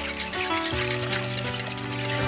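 A wire whisk beating in a mixing bowl, a rapid run of scratchy strokes, over background music.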